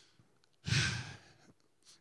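A man's single audible breath, or sigh, close into a handheld microphone, a little over half a second in and lasting about half a second, in a pause between spoken phrases.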